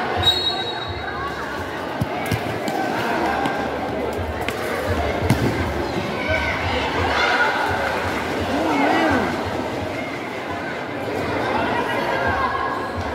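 Spectators on a futsal court talking and shouting all at once, with several sharp thuds of the futsal ball being kicked and bouncing on the concrete floor, the loudest about five seconds in.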